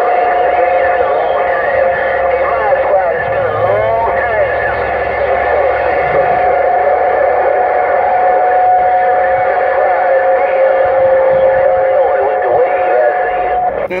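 Uniden Grant XL CB radio receiving a crowded channel 6: two steady whistles, one higher and one lower, hold through the signal over garbled, overlapping voices that cannot be made out. The whistles are heterodynes from several AM stations transmitting at once.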